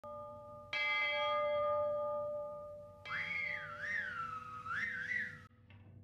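Two blasts of a multi-note train whistle. The first is a chord that fades over about two seconds. The second starts about three seconds in, its top note wavering up and down before it cuts off shortly before the end.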